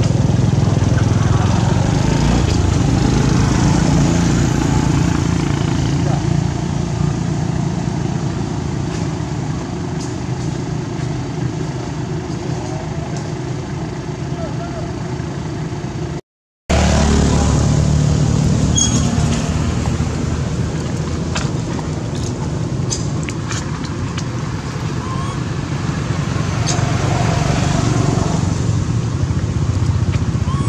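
Steady low background rumble with indistinct voices mixed in. The sound drops out completely for a moment about halfway through, then resumes.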